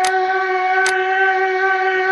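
Intro music: a wind instrument holding one long, steady note, with two sharp clicks, one at the start and one about a second in.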